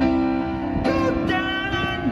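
Live pop ballad played through a PA: a man singing over a Roland stage piano, with held notes and sustained piano chords.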